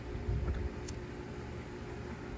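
Low wind rumble on the microphone over a faint steady hum, with a single light click about a second in from a handheld lighter being flicked to light a smoke bomb.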